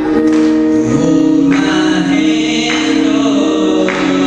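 Male soloist singing a slow gospel song into a handheld microphone, holding long sustained notes.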